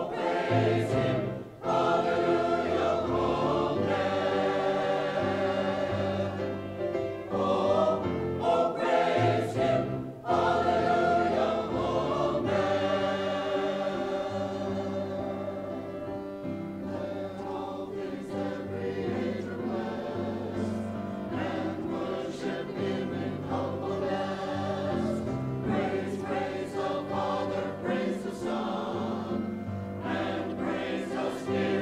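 Mixed church choir of men and women singing an anthem in parts, phrases broken by short breaths, growing softer a little under halfway through.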